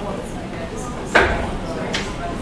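A few sharp clicks of laptop keys being typed, with one much louder knock about a second in.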